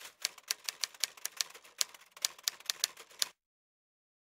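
Typewriter keystroke sound effect: a quick, irregular run of about fifteen key strikes with a short pause midway, cutting off suddenly a little over three seconds in.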